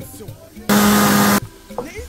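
Countertop blender motor running in one short burst of under a second, starting and stopping abruptly, blending onion and garlic with water.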